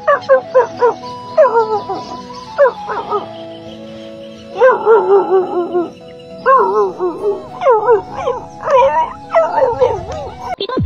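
Dogs barking and yelping in short clusters of calls whose pitch bends and drops, over background music with steady held notes.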